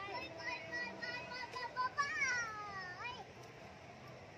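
A young child's high voice: a run of short sing-song notes, then a long call sliding down in pitch about two seconds in, over low crowd noise.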